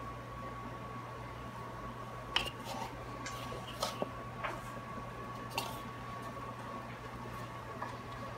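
Hands working raw chicken pieces in seasoned flour in a plastic bowl: faint soft squishing and rustling, with a few light taps, over a steady faint hum.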